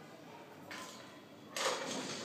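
Loaded barbell clattering as a weightlifter pulls it from the platform and catches it in a clean: a short rattle about two-thirds of a second in, then a louder clash of plates and bar about a second and a half in as the bar is racked on her shoulders.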